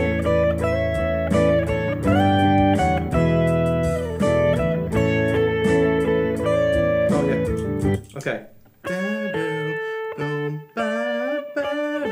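Electric guitar playing a harmony line over a backing track for about eight seconds. The backing then cuts out, and the guitar plays on alone with a few single notes that waver in pitch.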